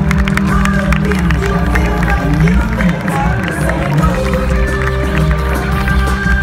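Loud live music from a concert sound system, heard from within the audience, with held notes over a steady low bass.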